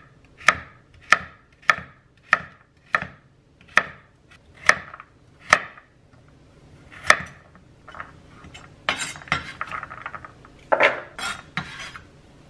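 Chef's knife chopping a carrot on a wooden cutting board: about nine separate chops, one every half second to a second. Near the end comes a rapid rough scraping and clatter, the knife sweeping the diced carrot off the board.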